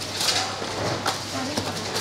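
Cardboard pastry boxes being folded and filled by hand, a papery rustle with a few short sharper crackles, over a faint murmur of voices.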